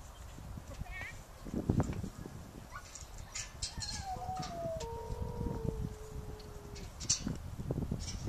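Sheep bleating: a falling call about four seconds in that runs straight into one long, held bleat.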